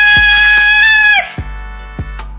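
A high falsetto voice drawing out a shouted "Smash!" into one long held note that breaks off a little past halfway, over background music with a steady beat.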